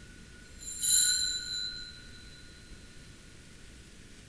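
Altar bell struck once about a second in, ringing with several clear high tones that fade over a second or two. It marks the elevation of the consecrated host.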